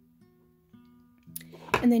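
Soft acoustic guitar background music, a few notes held quietly under the pause; a woman's voice comes in near the end.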